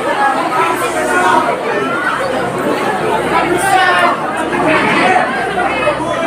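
Crowd chatter: many voices talking over one another, with no single speaker standing out.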